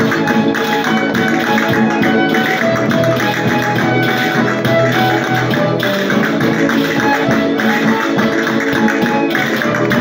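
Live traditional Maestrat-style folk dance music of the fandango and seguidilla repertoire, played on acoustic guitars and a violin with a tambourine, at a steady, lively dance pace.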